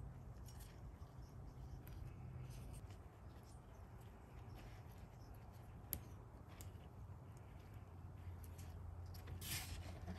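Faint sounds of a small metal tool and gloved fingers working through the dry, wiry roots of a Haworthia: scattered soft clicks and rustles, a sharper click about six seconds in and a short crunchy rustle near the end. A low steady hum lies underneath.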